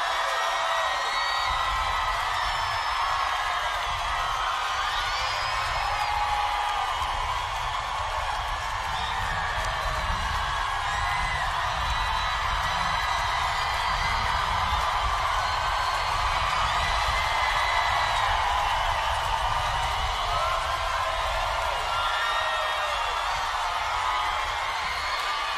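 Large concert crowd cheering and screaming, steady throughout, with many short whoops and whistles rising out of it over a low rumble.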